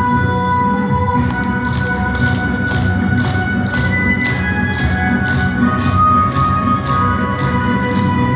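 Music with steady tones, joined about a second in by a group clapping their hands in time, about two claps a second.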